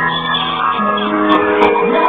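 Live music with held notes, and voices shouting and whooping over it.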